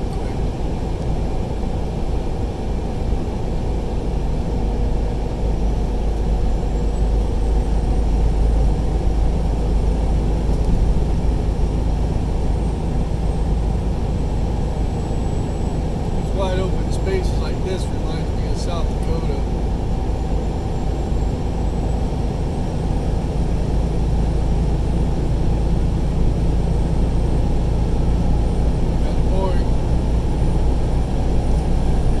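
Steady low road and engine rumble inside a vehicle's cabin while driving at highway speed, with a few brief higher sounds about halfway through.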